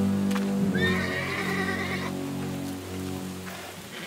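A horse whinnies once, for about a second and a half, rising at the start and then wavering, over sustained background music chords.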